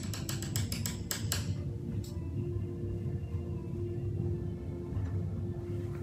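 About ten quick, light clicks in the first second and a half: a palette knife tapping on the palette as paint is mixed. After the clicks, soft background music with a steady hum.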